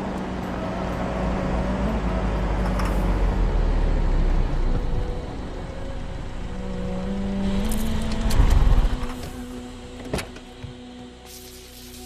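Car engine and tyres as an old sedan drives along a road, growing louder to a peak of low rumble about eight or nine seconds in, then falling away. This is followed by a couple of sharp knocks and, near the end, a steady hiss of steam escaping from the overheated engine.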